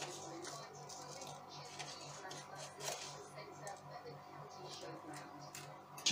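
Faint scattered clicks and rustles of a plastic spice container being handled and its lid opened, over a steady low hum.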